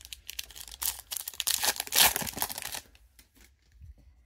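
Foil trading-card pack torn open and crinkled by hand, with the loudest rip about two seconds in; the rustling stops about three seconds in.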